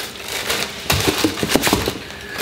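Tissue paper and plastic bags crinkling and rustling in a shoebox as spare laces are pulled out, a dense run of short crackles.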